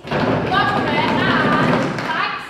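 A sudden loud burst of voices lasting about two seconds, with a thud as it begins.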